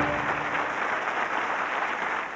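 Studio audience applauding as the closing theme music ends about half a second in; the applause then slowly fades down.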